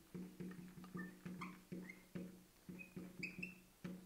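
Quiet background music: a short low plucked note repeated three or four times a second. Over it come faint short squeaks of a marker writing on a glass lightboard.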